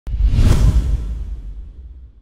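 A whoosh sound effect over a heavy bass hit for a logo intro: it starts suddenly, swells for about half a second, then fades away.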